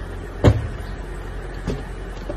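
A single sharp knock about half a second in, then a lighter click near the end, over a steady low hum.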